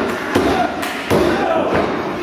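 Several dull thuds of wrestlers' bodies hitting a wrestling ring's mat within a couple of seconds, with voices over them.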